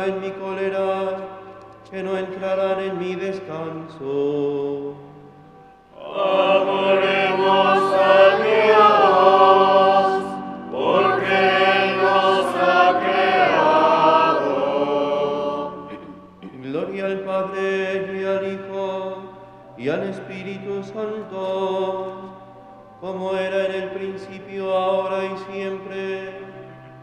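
Sung liturgical chant in short phrases over a steady low held note. Two long, fuller phrases in the middle are the loudest.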